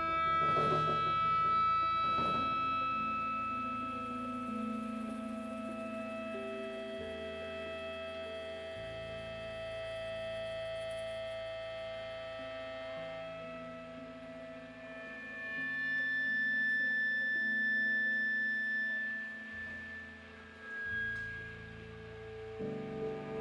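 A live band playing a slow instrumental passage: long sustained notes held over bass notes that change slowly, with no singing. Two cymbal strikes come in the first few seconds.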